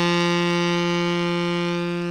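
Saxophone holding one long final note, steady in pitch and fading a little toward the end.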